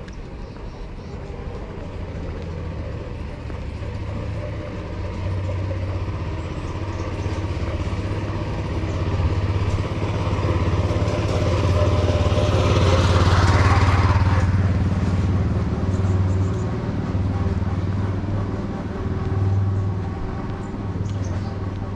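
Small truck with an aerial work platform driving slowly up and past, its low engine hum growing steadily louder to a peak about thirteen seconds in, with a short rush of noise as it goes by, then easing off.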